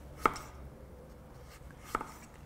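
Chef's knife slicing thin sheets off a squared-up carrot, the blade striking an end-grain wooden chopping board twice, about a second and a half apart.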